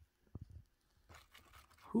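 Faint rustling and a few soft knocks of handling, quiet overall, running into a short exclaimed 'whoo' at the very end.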